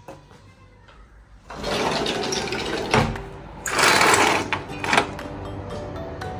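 A sliding window being pushed open: a loud, rough rattling scrape that starts about a second and a half in and lasts about three and a half seconds, with a few sharper knocks along the way.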